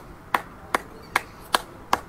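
A single person clapping slowly and evenly, about two and a half claps a second, five claps in all.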